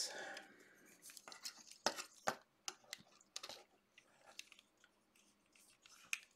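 Plastic panels and joints of a transformable 1/12 scale ride-armor motorcycle figure clicking and scraping as they are opened and moved by hand: a faint, irregular scatter of small clicks.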